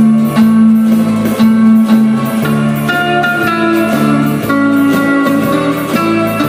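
Telecaster-style electric guitar picking a melody over a recorded backing track of bass, drums and keyboards, in a steady beat.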